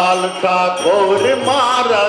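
Gujarati devotional bhajan: a man's voice holding a wavering, melismatic sung line over a harmonium drone, with tabla and manjira hand cymbals keeping a steady beat.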